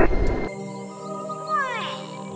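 Background music of steady held tones with a cat's yowl laid over it, a single falling meow-like glide about one and a half seconds in. A loud hiss cuts off sharply half a second in.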